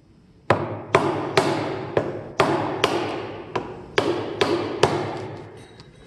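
Steel claw hammer striking the handle of a Narex mortise chisel as it chops into a wooden block. There are about ten sharp blows, roughly two a second, each with a short ringing tail, then a few light taps near the end.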